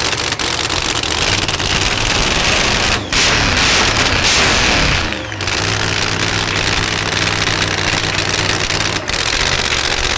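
Supercharged V8 drag-car engine idling, blipped about three seconds in, revving for a couple of seconds and dropping back to idle with a falling pitch.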